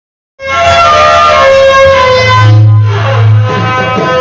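Drum band music starting about half a second in with held melody notes. A low note is sustained through the middle, and the drums come in with a steady beat near the end.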